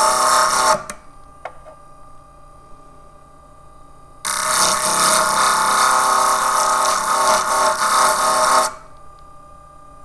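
Jewel Tool grinder's spinning disc grinding fired enamel glass off the top of a silver champlevé pendant, in two passes: the first stops about a second in, the second runs from about four seconds to nearly nine. Between passes the motor keeps running with a steady hum.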